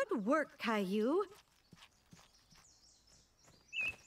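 Two short wordless cartoon voice sounds with widely sweeping pitch, a higher one and then a lower, drawn-out one, in the first second or so. After them come faint light taps, and a single brief high bird chirp near the end.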